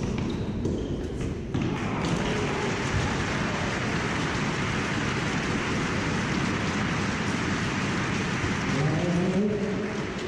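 A crowd applauding in a large indoor tennis hall after a point, beginning about a second and a half in and fading near the end, when a voice comes in. A few short knocks, like a tennis ball being struck or bounced, come before the applause.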